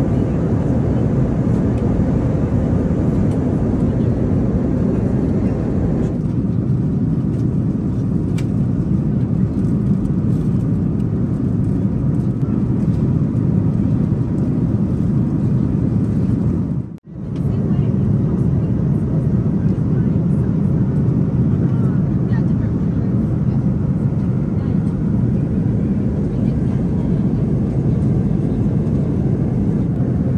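Steady cabin noise of an Airbus A330-200 airliner in flight, a low engine and airflow rush heard inside the cabin. It cuts out briefly a little past halfway.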